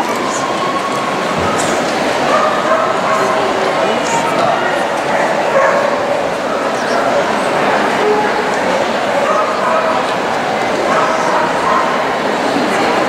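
Small dogs barking now and then over steady crowd chatter in a large, busy hall.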